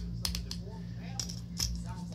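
External SSD drive enclosure being handled after assembly: a series of light, sharp clicks and taps, about half a dozen, over a steady low hum.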